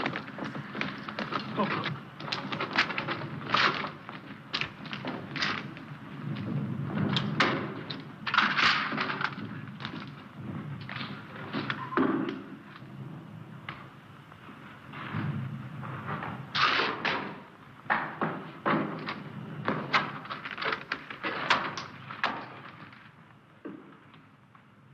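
Irregular knocks, thuds and clatters, many in quick succession, from soldiers with rifles pushing through a doorway and moving about a building.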